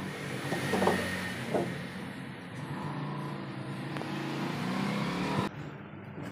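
A steady engine hum, with two brief scrapes of plywood boards about one and one and a half seconds in. The background noise cuts off abruptly near the end.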